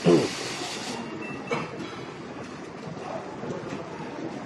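A loud, short rustle at the start, with a brief falling squeak, from a clear plastic sleeve handled close to the microphone, then a smaller rustle about a second and a half in. Under it runs a steady din of the busy counter room.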